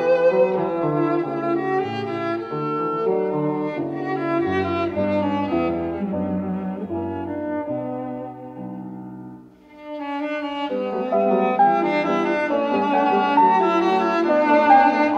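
Cello playing a sustained melody with piano accompaniment. About nine and a half seconds in, the music dies away to a brief pause, then picks up again and grows louder.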